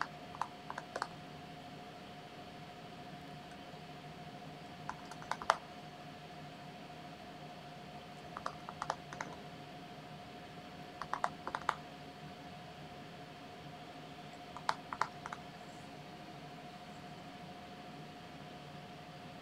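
A small paintbrush tapping dots of paint onto a stretched canvas. The taps come in short quick clusters of three to five light clicks every few seconds, over a faint steady hum.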